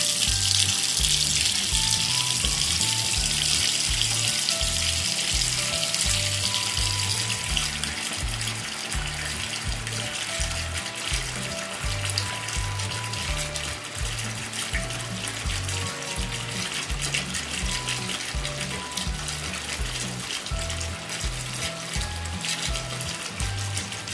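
Steady rush of water running from a tap, loudest at first and slowly fading, over background music with a steady beat and a simple melody.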